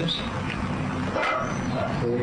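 A man's voice in short fragments between phrases, over the steady hum of an old archival recording.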